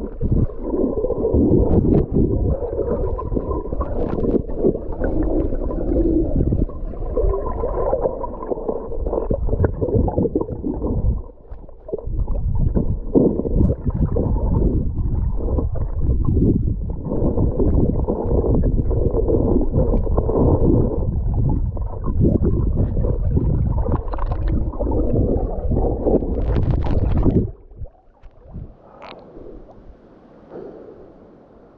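Muffled sound of water recorded with the camera submerged: a dense churning and bubbling with knocks from the camera and the swimmer's movements. About 27 seconds in it drops away suddenly as the camera comes up out of the water, leaving quieter open-air sound.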